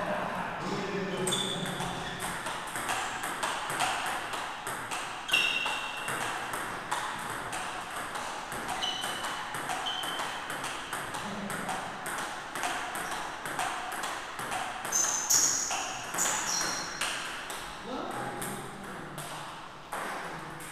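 Table tennis ball hit back and forth with bats and bouncing on the table in a practice rally, a steady run of quick, sharp clicks.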